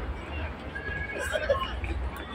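Distant voices and chatter from people around the ground, with a steady low rumble of wind on the microphone.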